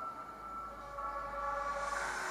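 Movie-trailer score: steady electronic tones held together as a sustained chord, growing louder about a second in and swelling with a bright hiss near the end.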